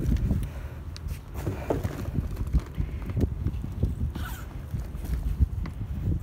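Wind buffeting the microphone as a fluctuating low rumble, with scattered light clicks and rustles from handling.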